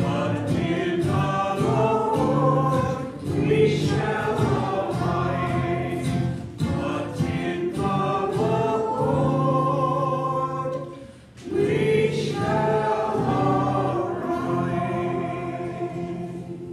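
Opening hymn sung by voices holding long, steady notes, with a short breath break about eleven seconds in and trailing off near the end as the hymn closes.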